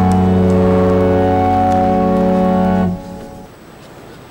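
Organ holding a sustained final chord that cuts off about three seconds in, leaving quieter background noise.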